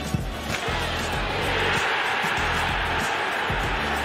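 Background music with a heavy, rhythmic bass beat. Under it, a stadium crowd cheers a goal, the roar swelling from about a second in.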